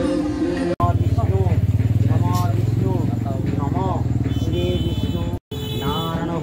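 An engine running steadily with a low, even rumble, with people's voices over it. It starts suddenly just under a second in and is cut off abruptly near the end.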